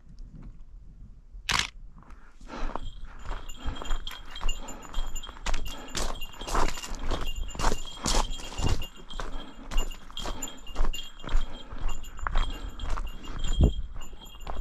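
Walking footsteps on a gravel trail, about two steps a second, starting a couple of seconds in after a single sharp knock. A small bell carried by the hiker, a bear bell, jingles steadily along with the steps.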